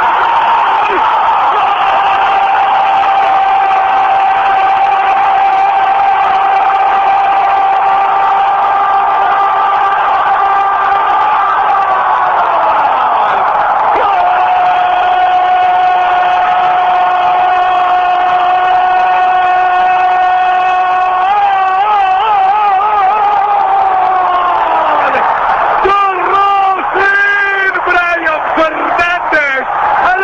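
Argentine radio football commentator's drawn-out goal cry: one shout held on a steady pitch for about twelve seconds that then drops away. A second long held note follows, breaks into a wavering warble and falls off, and excited shouting takes over for the last few seconds.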